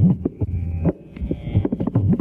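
South Indian hand drums playing a fast solo: rapid crisp strokes over deep bass notes that bend upward in pitch and fall back, with a short lull about a second in.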